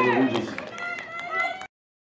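Several voices shouting and calling out at a soccer game, mixed with a few sharp clicks. The sound cuts off suddenly near the end.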